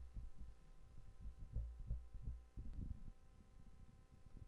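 Faint, irregular low thuds and bumps over a steady faint hum.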